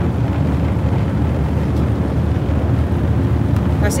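Steady low rumble of a car ferry's engines under way, mixed with wind on the microphone.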